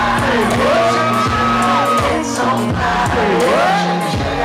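Loud live hip-hop concert music over a club PA, with a sung vocal line gliding up and down over a steady bass, recorded from within the crowd.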